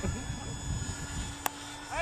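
Electric motors of a radio-controlled A-10 model plane running steadily overhead with a thin whine, over a low rumble of wind on the microphone. A single sharp click comes about one and a half seconds in.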